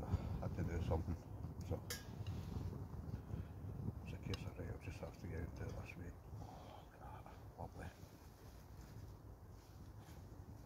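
Food being handled on a plate, with a few light clinks and clicks, over a low steady rumble; short murmurs of a man's voice come and go.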